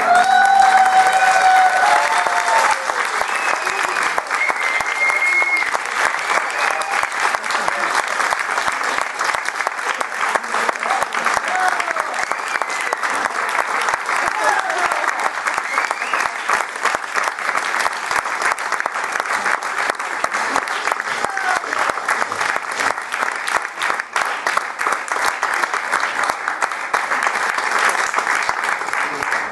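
Audience applauding steadily after a song, with voices calling out and cheering over the clapping, most in the first few seconds.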